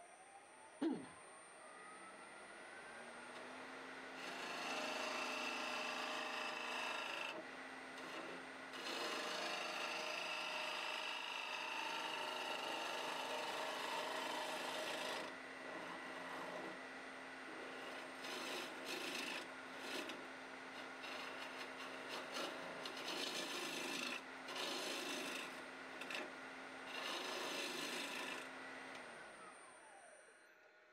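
Wood lathe motor spinning up with a rising whine, with one sharp knock about a second in. A bowl gouge then cuts the spinning green branch blank in long scraping passes with short pauses, over the steady hum of the lathe, and the lathe winds down near the end.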